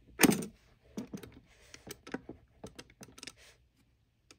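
Small, irregular clicks and taps from fingers handling the open Conner CP2045 hard drive's metal parts. The loudest knock comes just after the start, and a brief scraping rustle falls near the middle.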